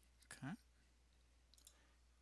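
Near silence with a quietly spoken 'okay', then a few faint computer-mouse clicks about a second and a half in, as a result plot is selected in the software.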